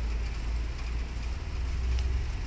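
Steady low-pitched hum with a faint hiss above it: the background of a room with no one speaking.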